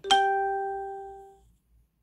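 A single chime-like note: one sharp strike that rings out with a clear pitch and fades away over about a second and a half.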